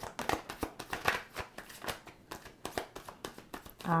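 Hands shuffling a deck of tarot cards: a quiet, irregular run of soft card flicks and slaps.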